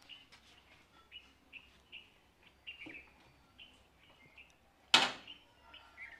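Faint bird chirps, short and repeated, with one sharp knock about five seconds in.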